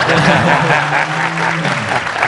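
Studio audience applauding, a man's voice heard underneath.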